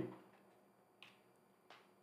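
Near silence with two faint clicks, about two-thirds of a second apart, typical of a computer mouse clicking to change a presentation slide.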